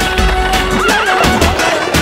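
A horse whinnying about a second in, a wavering cry that falls away, heard over the song's backing music.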